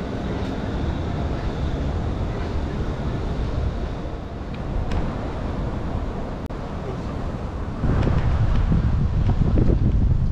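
City street ambience: a steady hum of traffic and the city, with wind rumbling on the microphone that turns louder and heavier about eight seconds in.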